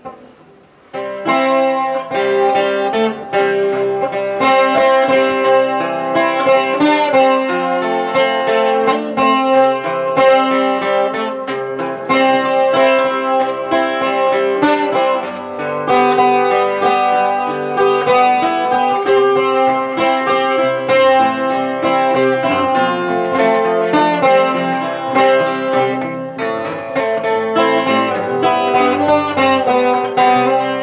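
Acoustic guitar played live, an instrumental passage of plucked notes and chords that starts about a second in.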